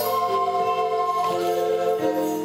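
A recorder orchestra of children and teenagers playing slow, held chords in several parts, with the notes changing about every second.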